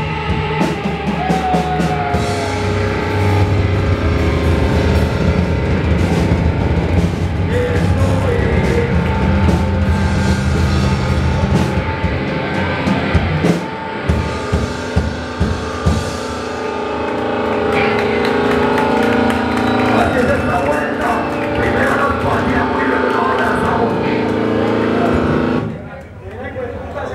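Beatdown hardcore band playing live and loud: distorted electric guitars, bass and drum kit with a vocalist. About halfway through the band breaks into a run of sharp stop-start hits, and the song cuts off right at the end.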